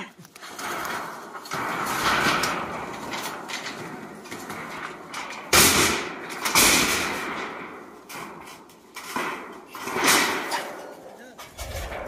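Corrugated metal roofing sheets being lifted, flexed and shifted across a stack, rattling and wobbling with sharp metallic bangs about halfway through and again a few seconds later.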